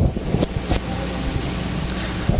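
Steady hiss with a low electrical hum from the recording's microphone during a pause in speech, with a couple of faint clicks about half a second in.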